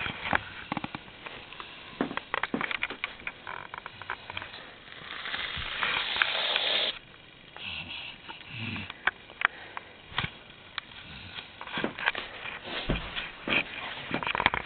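Scattered soft rustles and handling clicks. About five seconds in, an aerosol can hisses for roughly two seconds as it sprays foam into a hand, then cuts off sharply, and the rustling resumes.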